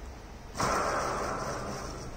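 Fidget spinner flicked into a spin: a sudden whirring hiss from its ball bearing starts about half a second in and slowly fades.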